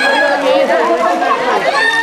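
A group of people talking and shouting over one another in lively chatter.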